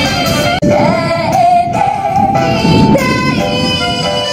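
Young female singers performing a pop song into microphones over backing music played through a stage PA. The sound cuts out briefly about half a second in.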